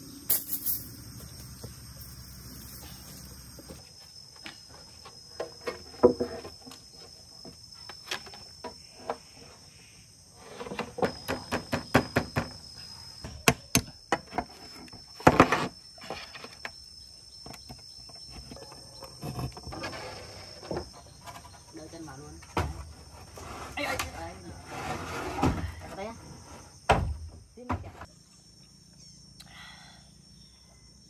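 Hammer taps and knocks on corrugated fibre-cement roof sheets as they are fixed in place, coming in quick runs, with thuds from the sheets being handled. A steady high insect trill runs underneath.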